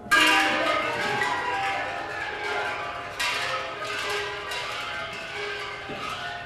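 Metal percussion struck and left ringing, a bell-like cluster of many tones. It is struck hard right at the start and again about three seconds in, with lighter strokes in between.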